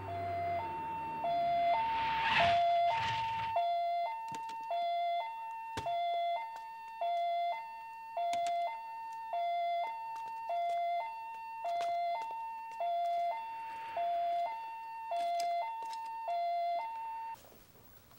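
Ambulance siren sounding a two-note hi-lo wail, switching between a high and a low note about twice a second. There is vehicle noise under it in the first few seconds, and the siren cuts off suddenly near the end.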